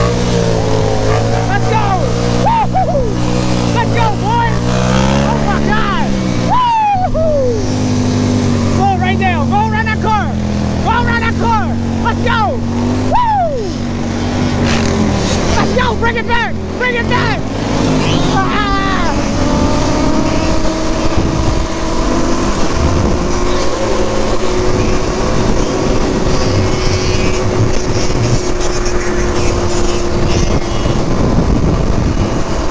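Suzuki LT-Z400 quad's single-cylinder four-stroke engine running under way among a pack of motorcycles. Other bikes rev in quick rising-and-falling blips through the first two-thirds. After that, a steadier engine drone climbs slowly in pitch as the quad cruises.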